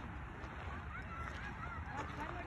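Several faint, short honking calls of geese.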